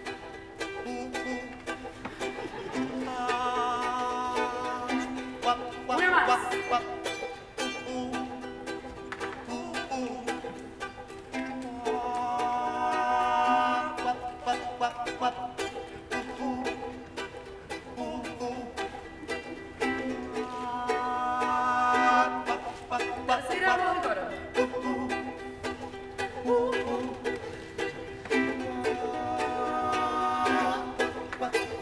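Ukuleles strumming a steady rhythm while several voices sing harmony parts over a main melody, the vocal phrases coming and going with a few sliding notes.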